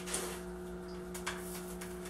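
A few faint light clicks of small bonsai-soil rocks being scooped and dropped into a bonsai pot, over a steady low hum.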